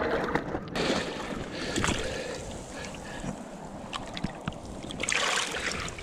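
Shallow seawater sloshing and splashing in a rock pool as hands move among kelp, with a few small knocks.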